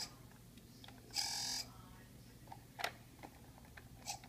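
The electronic sound circuit of a 1978 Kenner white TIE fighter toy giving one short buzzy electronic sound effect, about half a second long, a little over a second in. A sharp click follows near the end and a few faint ticks come from handling the toy.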